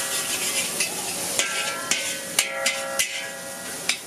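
Metal spatula scraping and striking a wok as fried noodles are stirred and tossed, over a steady sizzle. There are several sharp clanks, some leaving the wok ringing briefly.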